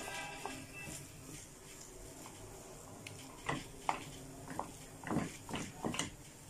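Wooden spatula stirring mashed potatoes in a nonstick frying pan, with several short scrapes and knocks against the pan in the second half. A faint steady tone fades out in the first second.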